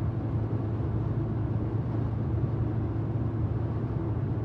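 Steady low drone of a moving vehicle's engine and road noise, heard from inside the cabin.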